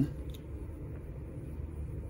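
Low steady hum of room tone, with one faint click about a third of a second in.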